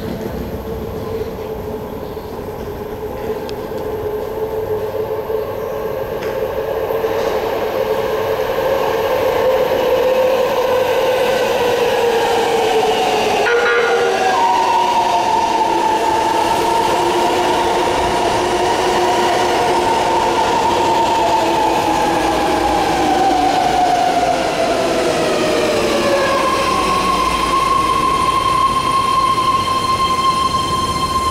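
BART train pulling into an underground station and braking: wheel rumble and a whine that gets louder as the train comes alongside, then falls in pitch as it slows. Near the end a steady high tone holds as the train comes to a stop.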